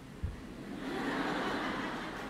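Congregation laughing in a large, echoing church: a diffuse crowd laugh that swells up about a second in, after a brief low thump near the start.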